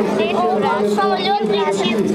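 Several people's voices chattering over a steady low hum.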